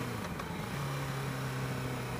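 Yamaha R6 sportbike's inline-four engine running at low revs under a steady hiss of wind, its note fading out briefly just after the start and returning slightly lower about half a second later.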